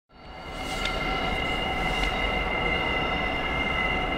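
A JR Freight EF510 electric locomotive hauling an unpowered EF64 slowly through the station yard: a steady low rumble under several steady high-pitched tones, with faint clicks about one and two seconds in. The sound fades in over the first half second.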